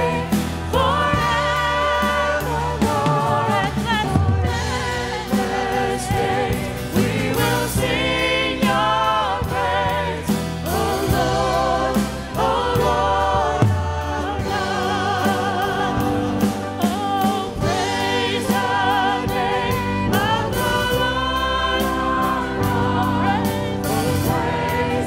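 Church choir and praise-team vocalists singing a gospel worship song together with instrumental accompaniment. Long held notes with vibrato sit over a steady beat.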